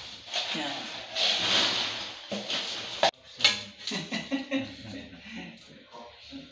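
People talking indistinctly over a tiling job, with a hissing scrape through the first two seconds and two sharp clicks a little after three seconds in.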